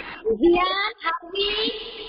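A young child singing a short phrase, ending on a longer held note.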